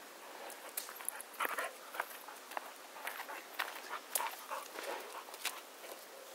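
Footsteps on a paved path mixed with short, irregular sounds from a dog passing close by, with scattered clicks throughout.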